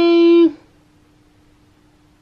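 A single loud, steady note of unchanging pitch, held for about half a second at the start and then cut off.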